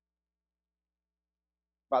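Dead silence with no sound at all for almost two seconds, then a man's voice starts speaking abruptly at the very end.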